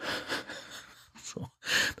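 A man breathing close to a microphone: a long breathy exhale, then a quick, sharp intake of breath near the end.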